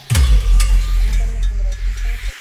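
Film score sound design: a sudden deep bass hit that sweeps downward, then holds as a low rumble under a hissing wash.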